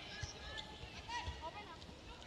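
Indoor volleyball arena crowd murmur, fairly quiet, with a few short, faint, high-pitched chirps and scattered soft knocks.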